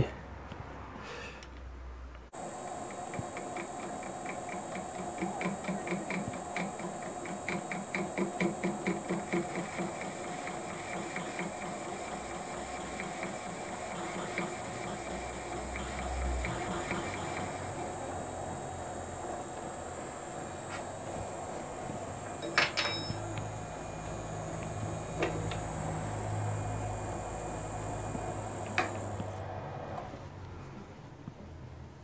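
Metal lathe starting up about two seconds in and running at its higher speed with a steady high-pitched whine, while a tool bit turns a chamfer on the end of a motor shaft. A fast, even ticking runs through the first half, and a few sharp clicks come later. The lathe stops near the end.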